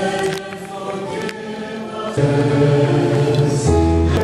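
Congregation singing a sung response of the Catholic Mass together in long held notes, the pitch stepping to a new note about two seconds in and again near the end.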